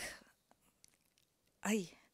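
A pause in a woman's speech: her voice trails off, about a second of near silence follows, and she starts speaking again near the end.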